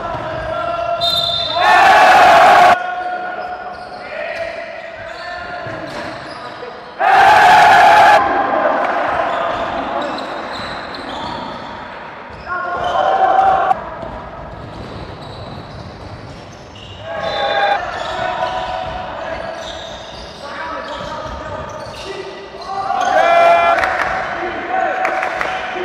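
Live sound of an indoor basketball game in an echoing gym hall: the ball bouncing, sneakers squeaking and players calling out. Two loud bursts of noise stand out, about two and seven seconds in.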